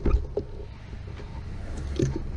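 Wind rumbling over the microphone of a camera on a moving bicycle, with a few sharp clicks from the bike in the first half-second.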